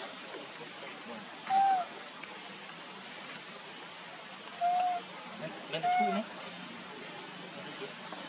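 Insects droning in one steady high-pitched tone, with three short calls from an animal, each rising then falling in pitch, about one and a half, four and a half and six seconds in; the calls are the loudest sounds.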